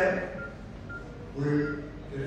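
A man speaking into a podium microphone, trailing off into a pause and resuming briefly near the end. Three short, faint beeps at the same pitch sound during the pause.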